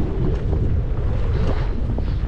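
Wind rushing over the microphone of a skier's camera while skiing downhill, a steady low rumble, with the skis sliding over the snow beneath it.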